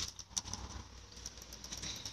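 A small child's bicycle giving a couple of light clicks and rattles near the start, then only faint ticks, over a low rumble.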